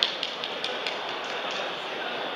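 Steady background noise of a crowded indoor hall, with a run of sharp taps, about four or five a second, fading out within the first second.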